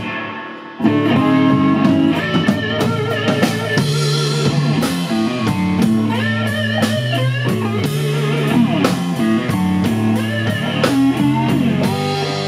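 Live blues band playing an instrumental passage: electric guitar lead with wavering, sliding notes over a walking bass guitar and drum kit. The band drops out briefly right at the start and comes back in under a second later.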